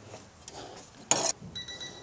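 A short metallic clatter of a steel offcut being handled against the car's sill about a second in, followed by a steady high electronic beep from a countdown timer that starts about a second and a half in.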